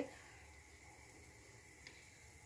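Near silence: faint room tone, with one soft tick shortly before the end.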